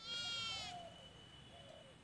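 A single animal call, about three quarters of a second long, right at the start, followed by a faint, thin, steady high whine with a few faint chirps beneath it.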